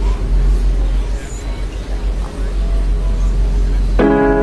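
A dense rumbling noise with a heavy deep bass hum and no clear notes, a non-musical stretch of the song recording.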